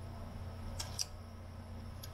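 Two quick, light clicks of a screwdriver on the metal chassis of a reel-to-reel recorder, about a second in, over a low steady hum.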